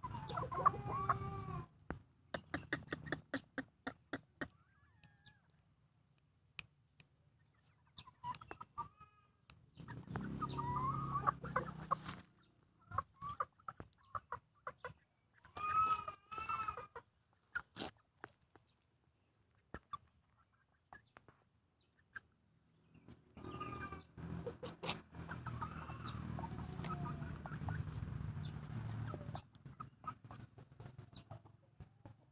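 Young Pama cockerel clucking in short pitched calls, coming in bursts near the start, around the middle and again a little later, with scattered clicks between them. A stretch of rustling noise follows near the end.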